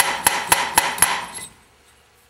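A Sharpie-marked steel valve bounced by hand on its freshly cut seat in a Casting 441 cast-iron cylinder head: sharp metallic taps about four a second, stopping about one and a half seconds in. The bouncing marks where the 30- and 60-degree cuts meet on the valve face, to check where the seat sits.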